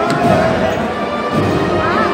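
Wind band playing a processional march, with crowd voices over it and a single sharp knock just after the start.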